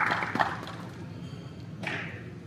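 The last scattered claps of an audience's applause dying away, leaving the hum of a large hall, with one short thump near the end.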